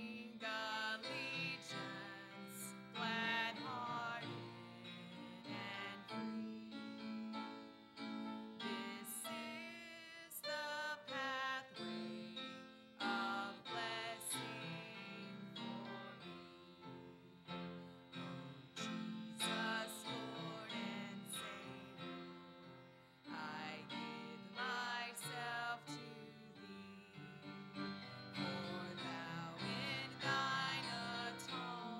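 A congregational hymn sung with a woman's voice leading, over piano accompaniment.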